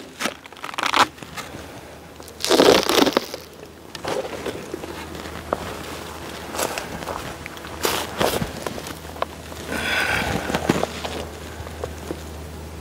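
Irregular scraping and crackling handling noises at a beehive: the wooden inner cover is dragged and slid aside, the loudest scrape coming a few seconds in, then a clear plastic feed container crinkles as it is handled near the end.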